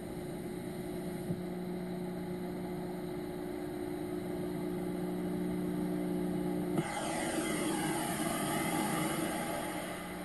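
A steady, jet-like droning rumble with several held low tones; about seven seconds in it suddenly brightens into a louder rushing sound with sweeping pitch.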